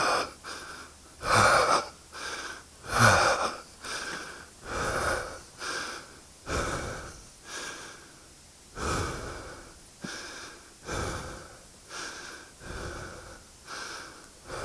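A rider breathing hard, close into a helmet-mounted microphone: a loud breath about every two seconds, the first few with a falling, groan-like voice in them, growing softer and further apart as he gets his breath back.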